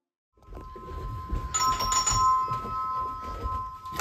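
An electronic doorbell chime ringing: two steady tones sounding together for about two and a half seconds, over the low rumble of a handheld microphone.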